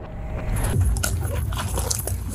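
Body-worn camera picking up a scuffle: heavy rumbling and rustling from the camera being jostled, rising in level at the start, with a few clicks and short high-pitched cries.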